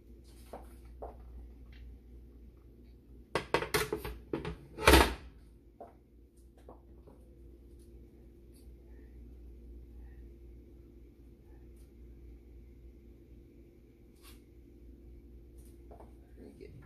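Aluminium pressure canner lid being handled and set down on the stovetop: a cluster of metal clanks a little over three seconds in, with the loudest clank about five seconds in. After that a faint steady hum, with a few light ticks.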